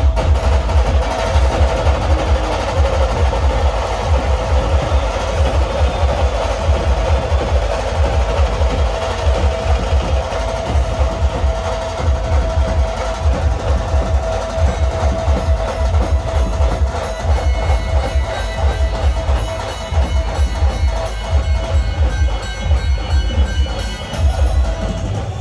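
Loud dhol-tasha style percussion music blasting from a truck-mounted loudspeaker stack: a fast, heavy bass-drum beat with sharper drum strokes on top and a steady held tone above them.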